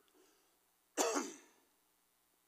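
A man clears his throat with a single short cough into a handheld microphone about a second in, its pitch dropping as it fades within half a second.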